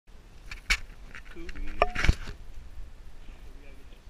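Sharp knocks and clicks of a handheld GoPro camera being handled, three of them in the first two and a half seconds, with a brief voice between them.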